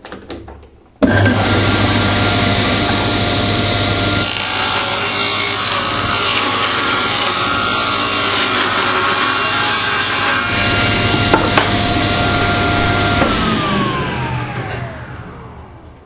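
Tablesaw switched on about a second in and running with a steady tone, then ripping a thin strip of wood for about six seconds. After it is switched off the blade and motor run down with a falling whine.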